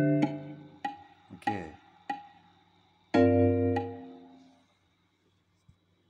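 Computer playback of a notated piano-and-melody piece from score software: a few short, detached chords and single notes, then a final chord with a deep bass note about three seconds in that rings and fades away by about four and a half seconds. A small click follows near the end.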